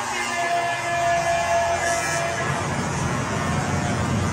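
Hockey arena ambience: sustained music tones over the PA in the first half, giving way to a loud, low crowd rumble.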